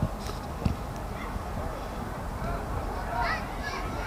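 Distant high-pitched shouts from players on a football pitch, several short calls in the last second and a half, over a low steady rumble. A single thump comes less than a second in.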